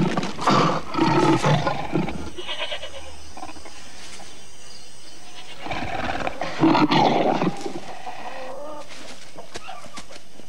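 Leopard snarling in two bouts, one at the start lasting about two seconds and a louder one about six to seven and a half seconds in, with quieter stretches between and after.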